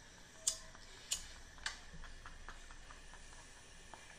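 A man's near-silent laughter: a few faint, short clicks and breaths, three sharper ones in the first two seconds, over quiet room tone.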